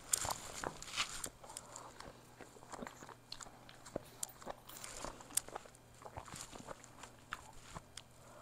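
Close-miked chewing of a crunchy fried egg roll: irregular crunches, crackles and wet mouth clicks.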